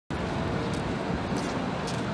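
Steady city street noise with the rumble of distant traffic, and a few faint light ticks.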